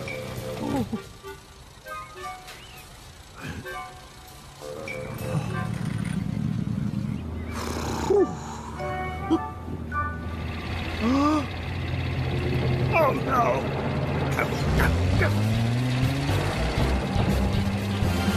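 Cartoon soundtrack: background music over the steady hum of a small car's engine, with wordless mumbled voice noises. Near the end a rising engine note comes in.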